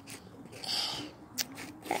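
Felt-tip marker scratching across rough, weathered fence wood as a line is drawn: a short scratchy hiss about two-thirds of a second in, then a single click.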